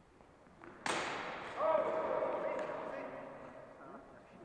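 A sudden loud burst of noise about a second in, during a longsword fencing exchange, slowly dying away in the hall's echo, followed by a long held shout that fades out.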